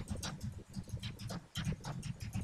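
Computer keyboard typing: irregular keystroke clicks, several a second, over a dull low thudding.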